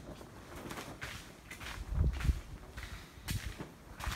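Plastic greenhouse sheeting rustling and crackling in the wind, with a low buffet of wind on the microphone about halfway through.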